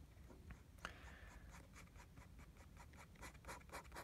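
Fountain pen nib scratching faintly on paper in a run of short, quick strokes as ink lines are drawn.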